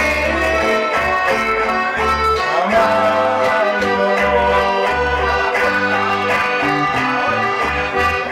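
A live trio of piano accordion, acoustic guitar and electric bass playing a song. The accordion carries sustained melody notes and chords over a bass line of held low notes, each lasting about a second.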